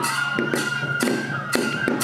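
Kagura festival music: a high transverse flute note held steady while a taiko drum and jingling percussion strike sharply at irregular intervals.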